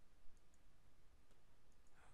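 Near silence with a few faint computer mouse clicks, spaced irregularly, as edges are picked and a dialog is confirmed.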